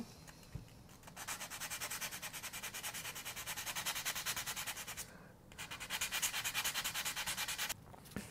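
Fine-grit sandpaper rubbed by hand in quick, short back-and-forth strokes over a chalk-painted wooden paddle, wearing away the paint for a distressed look. The strokes start about a second in, break off briefly around five seconds in, then resume.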